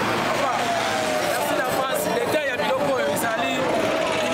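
A man talking loudly with street traffic and crowd noise behind him.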